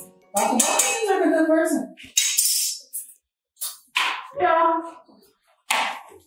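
A woman talking in short phrases with pauses between them; the words are unclear.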